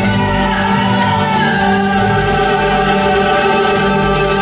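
Live music: a woman singing over held harmonium chords.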